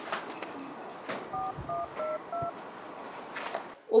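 Four touch-tone phone keypad beeps in quick succession, about three a second, starting about a second and a half in, each a short two-note tone: a phone number being dialled.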